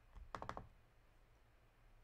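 A short run of about four quick, faint clicks on a computer keyboard, made while adjusting audio capture settings.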